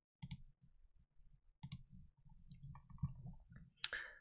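Three faint, sharp computer mouse clicks, spread out over a few seconds, with a low room hum between them.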